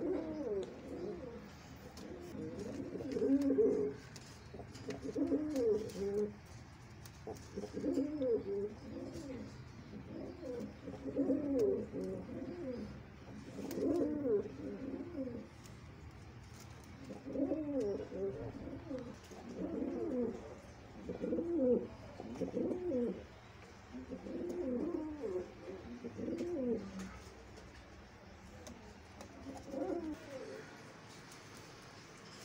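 Fantail pigeon cooing: a long run of low, rolling coos, one phrase every two seconds or so, with a short pause about halfway and the calls stopping a few seconds before the end.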